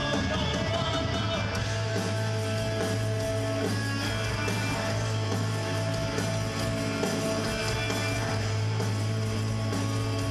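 Punk rock band playing live: electric guitar through Marshall amplifiers over bass guitar and drums, loud and continuous, with a strong sustained low bass note from about a second and a half in.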